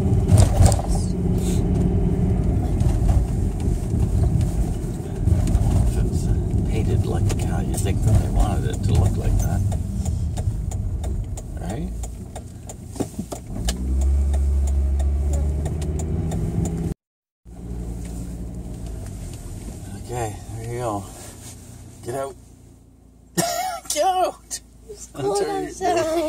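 Inside a moving car: a steady drone of engine and tyres, with a louder low rumble about two-thirds of the way in. After a brief break the noise is quieter, and a few words of speech come near the end.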